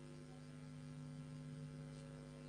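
Faint, steady electrical mains hum.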